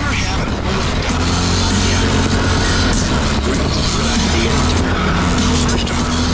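An ATV engine runs steadily while riding along a dirt trail, its pitch wavering slightly with the throttle, under a heavy rush of wind and ground noise.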